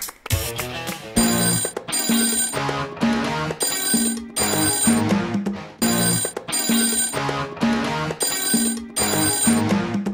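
A TV game show's theme jingle: music built around a ringing telephone bell, in short repeated bursts with brief gaps between them.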